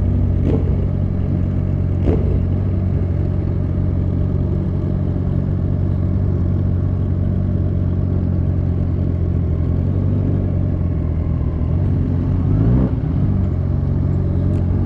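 Motorcycle engine running steadily at low revs while the bike rolls slowly, with a brief rise and fall in revs near the end.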